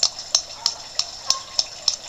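Steady hiss of a garden pond's running water, with a series of sharp, evenly spaced clicks, about three a second.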